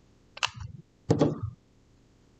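Light handling noises of small craft pieces on a table: a sharp click about half a second in, then a duller knock a little after a second, as the metal washer is handled and set back on its stand.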